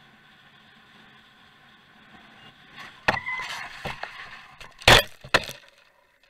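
A vehicle crash heard from the camera riding on it. Faint steady road noise gives way about three seconds in to a sudden impact with a brief squeal, then clattering and two loud hits near the end as it goes down onto the ground, after which the sound cuts out.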